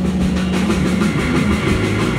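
A blues band playing live: electric guitars over bass, drums and keyboard, with a steady rhythmic beat.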